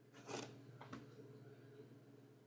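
A bamboo cutting board being lifted off the laser engraver's bed: a brief scrape about a quarter of a second in, then a light knock just before the one-second mark. Otherwise near silence with a faint low hum.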